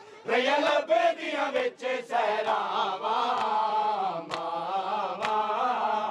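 Men chanting a noha, a Shia mourning lament, in unison. The chant rises and falls, with a short break at the very start. Sharp slaps come roughly once a second from matam, the mourners beating their chests with their hands.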